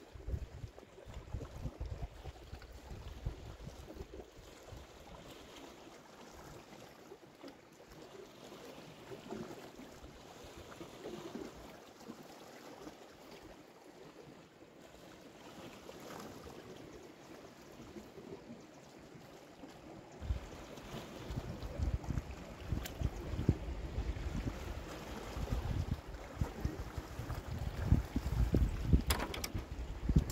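Wind buffeting the microphone over the wash of small waves on rocks. The gusts grow stronger about two-thirds of the way in, with a few sharp clicks near the end.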